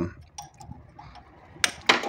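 A few light metallic clicks and clinks from an open-end wrench being handled and fitted onto a sender fitting on a Volkswagen Beetle engine.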